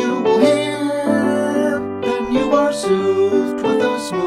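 Piano playing the chorus of a 1922 popular dance song, melody over a steady chordal accompaniment.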